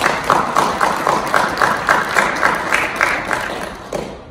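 A small audience applauding, with one clapper close by whose claps stand out at about four a second. The applause stops near the end.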